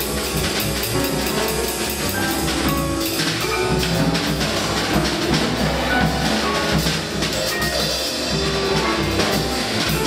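Free jazz quintet improvising live: busy drum kit with cymbal strokes under short, scattered notes from the other instruments, dense and without a pause.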